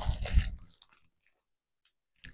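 Handling noise: a clip-on microphone held in the hand bumping and rustling, with a plastic candy bag crinkling, for under a second, then quiet.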